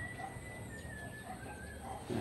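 A faint, distant bird call: one long, thin high note held for nearly two seconds, stepping down slightly in pitch toward the end, over a quiet outdoor background.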